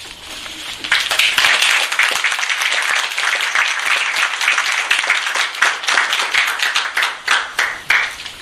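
Audience applauding at the end of a talk: dense clapping that starts about a second in and dies away near the end.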